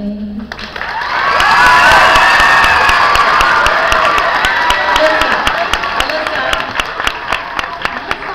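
A school audience of children cheering and clapping as a song ends. The cheer swells about a second in, then slowly dies down while the clapping goes on.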